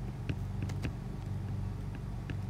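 Steady low hum with a few faint light taps of a stylus writing on an iPad's glass screen.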